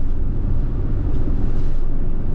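Steady low road and engine rumble inside a vehicle's cabin while it cruises at highway speed.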